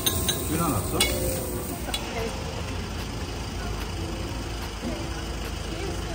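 Beef sizzling steadily on a charcoal tabletop grill, with a couple of sharp clicks from metal tongs near the start and about a second in.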